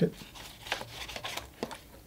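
Old fan brush scrubbed around in water in a collapsible plastic water bucket: soft swishing with a few light, irregular ticks of the brush against the plastic.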